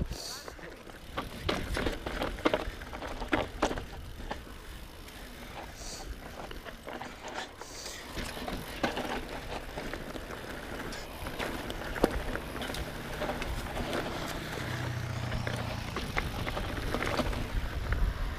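Mountain bike descending rough dirt singletrack: tyres rolling over dirt and rock, with frequent sharp rattles and knocks as the bike hits bumps.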